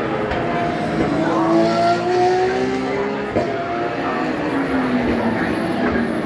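Racing car engine at full throttle, its note rising steadily for about three seconds, breaking sharply as a gear change comes, then falling in pitch as the car slows or passes away.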